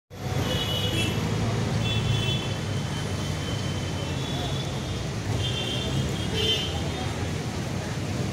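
Busy street traffic: a steady rumble of passing vehicles with repeated short, high-pitched horn toots, over the murmur of a group of men talking.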